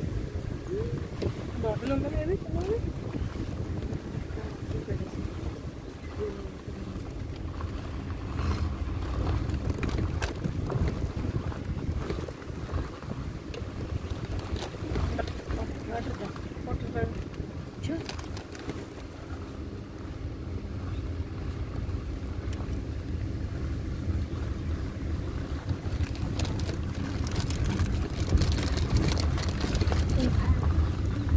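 Low rumble of a safari vehicle driving along a forest track, with wind buffeting the microphone. It gets louder near the end, with more knocks and rattles.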